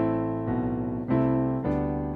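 Piano chords held with the sustain pedal: an A minor chord over a doubled A bass struck at the start, then a new chord about a second in, the passage reaching G major over a doubled D bass by the end.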